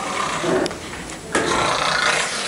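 A man's wordless, weary groan followed by a breathy exhale.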